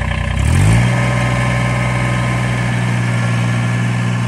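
Kubota BX23S subcompact tractor's three-cylinder diesel engine running just after starting; about half a second in its pitch rises, then it holds steady at the higher speed.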